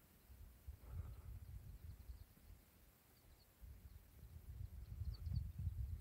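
Faint outdoor background: an uneven low rumble that comes and goes, with a few faint, short high chirps in the second half.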